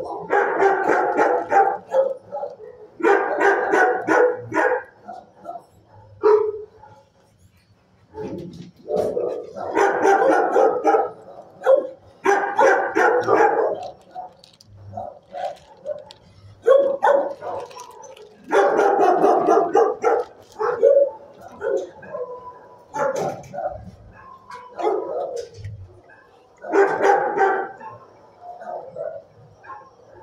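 Shelter dogs barking in bursts of rapid, overlapping barks lasting a second or two, recurring every few seconds with short quieter gaps between them.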